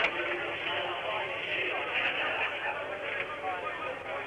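Roadside crowd of spectators shouting and cheering, many voices at once, on an old broadcast sound track with the treble cut off.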